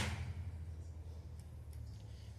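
The fading echo of a shot from a powered-up Shark PCP air rifle (.22, 5.5 mm) dies away in the first moments. After that there is a low steady hum with a few faint ticks.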